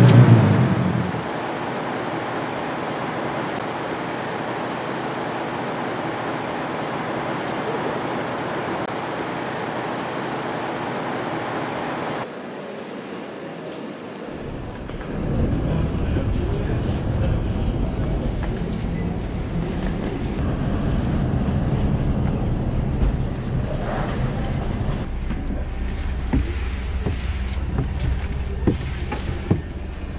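Steady street traffic noise, then after a sudden cut a low, steady rumble of diesel coach engines running at a bus station and inside a coach, with a few light clicks near the end.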